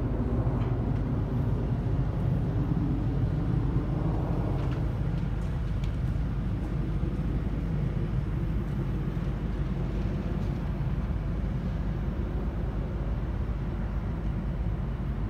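Steady low outdoor rumble with no distinct events, even in level throughout.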